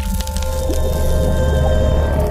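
Logo-sting music and sound effect: a sudden hit, then a deep, sustained low rumble under held tones.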